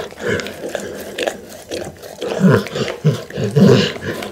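Pit bull licking a glass bowl close to the microphone: irregular wet licks and slurps mixed with short, low throaty grunts.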